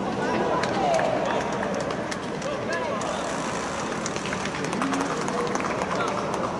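Several players shouting and calling out across an open football pitch, their voices rising in level just after the start and overlapping, with a few short sharp knocks among them.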